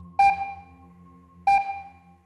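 Two electronic countdown beeps about a second and a quarter apart, each a sharp pitched ping that fades away, counting down to the release of the ball from the catch points.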